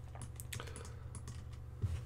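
A handful of scattered clicks from a computer keyboard and mouse, over a low steady hum.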